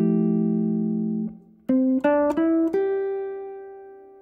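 Guitar playing an F chord that rings and is cut off about a second in, followed by four single notes climbing one after another, the last left to ring and fade. The four notes are a C melodic structure sounded over the F chord: its fifth, sixth, seventh and ninth.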